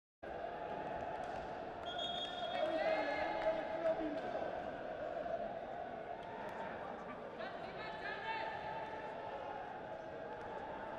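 Indoor sports-arena ambience: a steady hum of the hall and crowd with voices calling out, echoing in the hall, twice for a second or two. There are a couple of short knocks a few seconds in.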